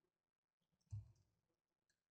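Near silence, broken once about a second in by a single short, soft click from a computer mouse button.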